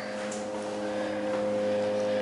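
Hydraulic freight elevator car travelling upward: a steady hum of several even tones from the running hydraulic pump unit, with a light rushing hiss.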